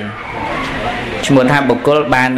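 A man's voice, a monk preaching through a microphone, returns about a second and a half in, in a sing-song delivery with held, level pitches. It follows a brief stretch of hiss-like noise.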